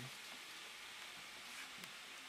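Faint steady hiss of room tone and recording noise, with no distinct event.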